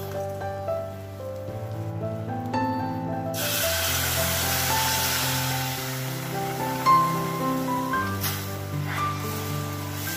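Background music with a steady melody. From about three seconds in, a hissing sizzle of water and jaggery heating in a stainless-steel pan rises and fades out around eight seconds. A single sharp knock comes near seven seconds.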